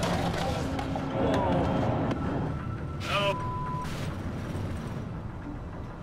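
Steady low drone of a crab boat's engine heard inside the cabin, with crew voices over it. A short steady beep sounds about three seconds in.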